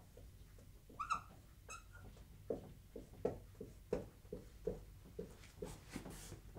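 Dry-erase marker on a whiteboard: two brief high squeaks about a second in, then a run of short, faint scratching strokes and taps, roughly two a second, as a row of dashes and commas is drawn.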